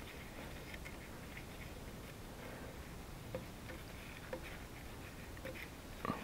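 A few faint, light metallic clicks as a hydraulic hose fitting is worked by hand against the backhoe control valve, trying to start its threads, over a low steady background hiss.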